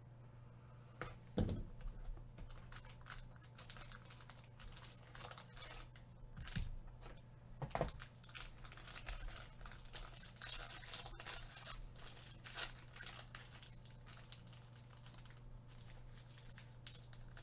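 Plastic wrapping being torn and crinkled off a trading-card box by gloved hands: a run of crackles and rustles with a couple of louder snaps, over a low steady hum.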